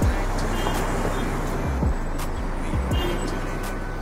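Hip-hop background music in a stretch without vocals: a beat of deep bass hits that drop in pitch, with hi-hat ticks over a steady low rumble.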